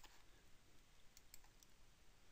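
Near silence: room tone with a few faint clicks of a computer mouse, three close together just over a second in.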